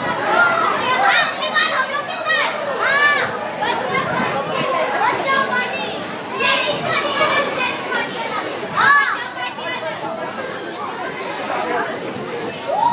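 Many voices of children and other riders chattering and shrieking over one another on a spinning teacup ride, with sharp high shrieks about three seconds in and again near nine seconds.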